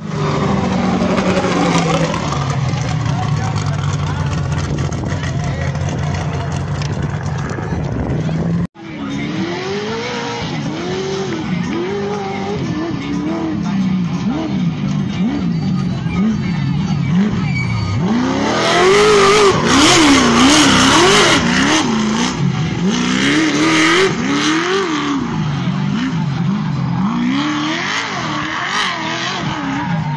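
Trophy truck race engines. First an engine holds a steady pitch as a truck powers through dirt. After a brief dropout about nine seconds in, engine pitch rises and falls over and over, loudest between about nineteen and twenty-two seconds.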